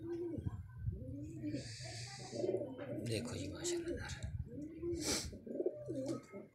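Domestic pigeons cooing repeatedly, each coo a low rise-and-fall call, coming about once a second. There is a short hiss about two seconds in and a sharp click near the end.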